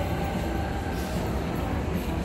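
Steady low rumble of background noise in a busy indoor public hall, even in level throughout.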